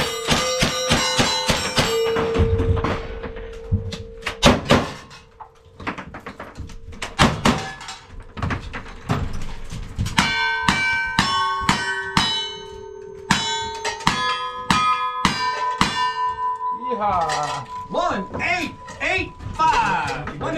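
Rapid gunfire at steel targets: a lever-action rifle fires a fast string of shots in the first two seconds, each hit followed by the ring of steel plates. After scattered shots, a second fast string of about a dozen ringing hits starts about ten seconds in and runs for some seven seconds.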